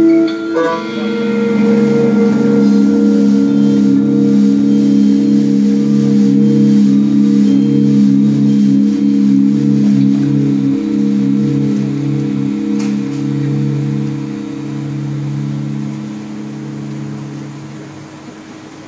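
Electric guitar and live electronics playing a sustained, ringing drone of low tones, with a lower note pulsing on and off beneath it. The sound thins and slowly fades over the last several seconds.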